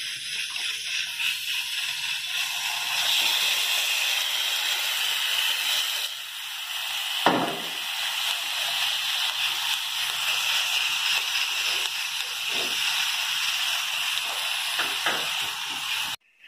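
Seasoned strips of beef sizzling in hot oil in a nonstick frying pan, a steady hiss. A single knock about seven seconds in.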